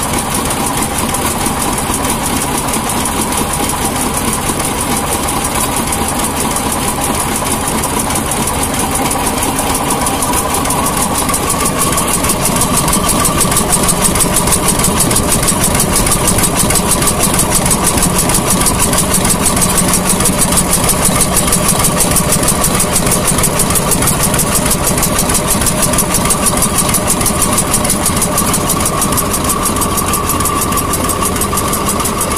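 Vintage vertical single-cylinder stationary engine with twin flywheels running steadily, its regular beat carrying on without a break and growing louder from about halfway through.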